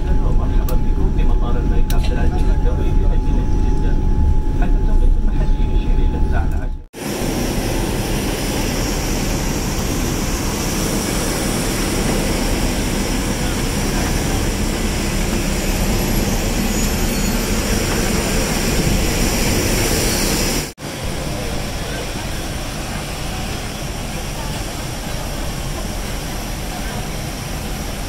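Boeing 787-9 airliner: at first the cabin noise as the jet rolls on the ground, a deep rumble under a steady whine. About seven seconds in, a sudden cut to loud, steady jet and ground-equipment noise on the apron beside the parked aircraft's engine. Near the end, another cut to a slightly quieter steady noise of the same kind.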